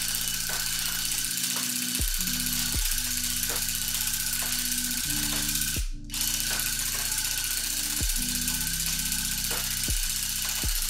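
An electric tufting gun runs with a rapid, steady mechanical rattle and whine as its needle punches yarn into the canvas. It cuts out briefly about six seconds in, then runs on.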